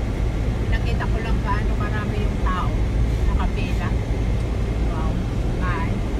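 Steady low road and engine rumble of a moving car, heard from inside the cabin.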